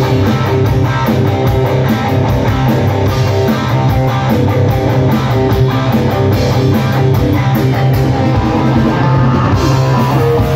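Live heavy metal band playing: electric guitars, bass and drum kit, with a steady run of cymbal hits over the guitars, loud and continuous.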